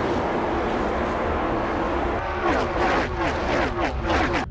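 A pack of NASCAR stock cars' V8 engines at full throttle as the field streams past at race speed, a dense, steady engine noise. From about two seconds in, a man's voice comes in over it.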